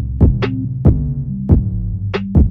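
Hip-hop instrumental beat with no vocals: a kick drum about every two-thirds of a second and a sharp snare hit near the start, over sustained deep bass notes.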